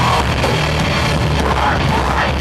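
Hardcore metal band playing live: loud, dense electric guitar, bass and drums, running steadily without a break.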